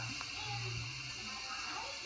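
Steam hissing steadily from an Instant Pot's pressure-release valve as the last of the pressure is vented after a natural release, weakening slightly near the end.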